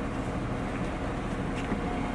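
Steady low background rumble of an outdoor work yard, with no distinct events.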